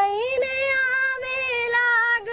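A young woman singing a Gujarati song solo and unaccompanied, holding long notes that slide gently in pitch.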